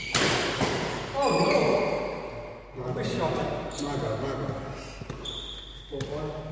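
A sharp badminton racket hit on the shuttlecock right at the start, then players' voices calling out in a large echoing sports hall, with a short high squeak of shoes on the court floor near the end.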